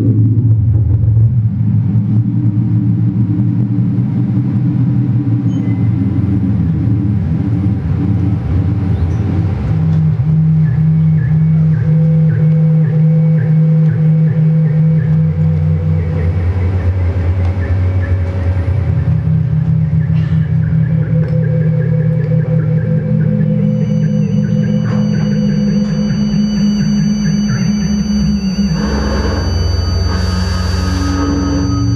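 Electronic drone music: layered, sustained low synthesizer tones with a grainy rumble in the first few seconds. The tones hold and then step to new pitches every few seconds, with faint steady high tones above them in the second half and a short hissing swell near the end.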